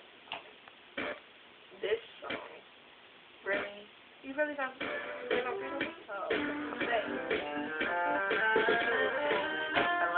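Recorded song starting a few seconds in after a near-quiet gap: guitar notes come in, then singing over the music, which grows fuller and louder towards the end.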